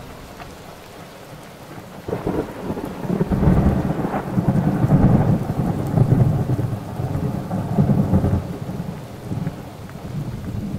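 A thunderstorm with rain and a long rumble of thunder that swells about two seconds in and dies away near the end.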